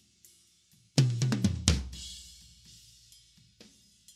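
Soloed tom track from a drum kit recording: a quick fill of several tom strokes about a second in, the last one the loudest and ringing out for about a second. A faint high cymbal hiss bleeds in behind it.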